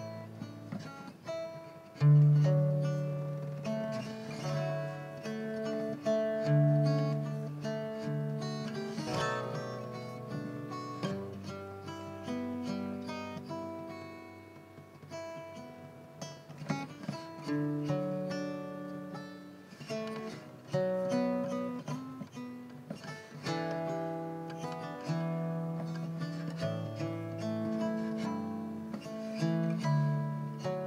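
Collings Eastside LC hollow-body electric guitar played solo with the fingers: a chord-melody arrangement, with bass notes ringing under a plucked melody line.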